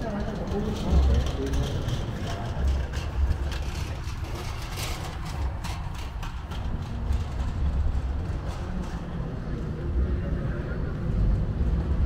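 Outdoor city plaza ambience with passersby's voices and wind rumbling irregularly on the microphone. A run of light clicks sounds through the middle.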